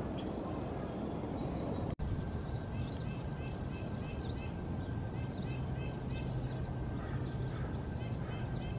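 Birds chirping over a steady outdoor background, with short high notes repeated several times a second. There is an abrupt break about two seconds in, and the chirping is clearer after it.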